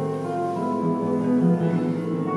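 Classical guitar played solo with the fingers: a slow phrase of plucked notes left to ring, with new notes sounding about half a second and a second and a half in.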